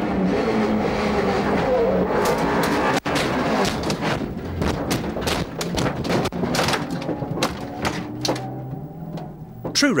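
In-car sound of a Vauxhall Nova rallycross car rolling over: the engine running hard, then from about two seconds in a long run of bangs and crunches as the car tumbles, thinning out near the end to a low engine hum.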